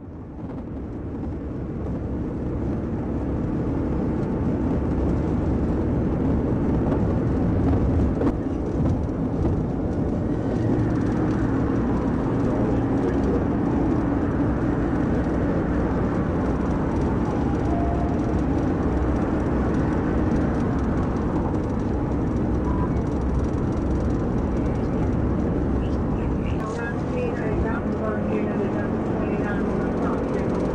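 Steady road and wind noise from a police cruiser driving at about 100 mph, rising over the first few seconds and then holding level.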